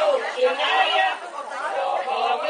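Small women's choir singing a cappella, several voices together with held notes and slow slides in pitch.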